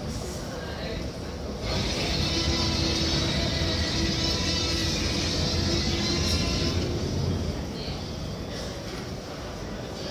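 A long, loud dinosaur roar from a walking Tyrannosaurus rex costume's sound effects. It starts suddenly a couple of seconds in, lasts about six seconds with a deep rumble underneath, then fades away.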